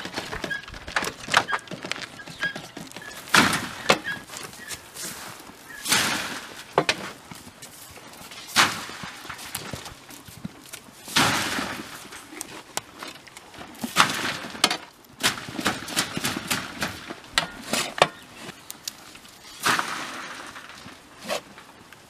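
Shovel scraping soil out of a steel wheelbarrow and throwing it into the trench at the foot of a fence, giving irregular scrapes and thuds every couple of seconds.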